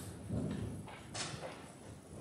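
Footsteps on a church floor, a few dull steps with a brief rustle of cloth or paper, as the preacher walks up to the lectern.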